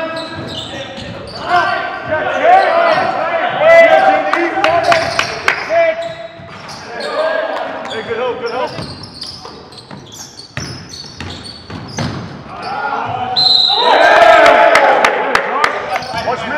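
Basketball dribbled on a hardwood gym floor, with sharp rubber-sole sneaker squeaks as players cut and stop, echoing in a large gym.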